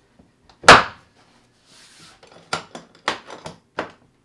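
The front latch of a DeWalt plastic tool box snapping shut with one sharp, loud clack about a second in. A few lighter plastic clicks and knocks follow as the latches on the lid are worked.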